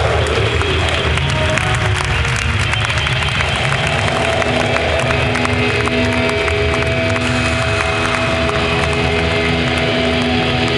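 Rock band playing live: a loud, dense wash of distorted guitar noise with held tones over a steady low bass. A falling pitch sweep ends right at the start.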